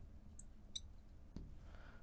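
A marker squeaking on a glass lightboard in a run of short, high-pitched chirps as it writes, with a single light click about two-thirds of the way through.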